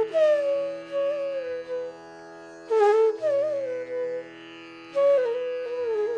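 Bansuri (bamboo flute) playing three short, sliding melodic phrases of Raga Hameer, with brief pauses between them, over a steady drone.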